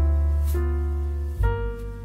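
Slow, soft instrumental jazz: piano chords over a deep sustained bass note, with light percussion strokes. The chord changes about a second and a half in.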